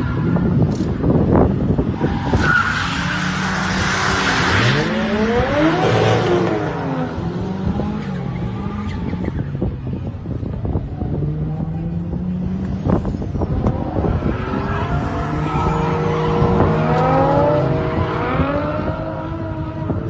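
Drift cars' engines revving, the pitch rising and falling as they pass along the circuit, with tyre screech from about two to five seconds in.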